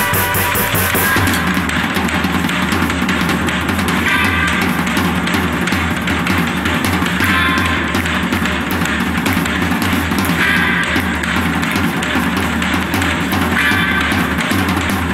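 An acoustic drum kit played with sticks, drums and cymbals going without a break, along with a rock recording that has guitar in it.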